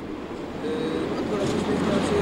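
Road vehicle noise: a passing vehicle's engine and tyres over a low steady hum, growing louder through the pause.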